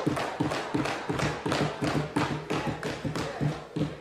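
Members thumping their desks in a debating chamber, a fast, irregular patter of many knocks, with voices calling out beneath. In a Westminster-style house this desk-banging is a show of approval for the point just made.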